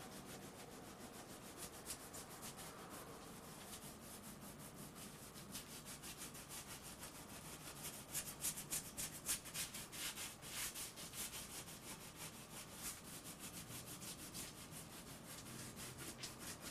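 Faint, irregular scraping and clicking from hands working food or utensils on a kitchen counter, quicker and louder about halfway through.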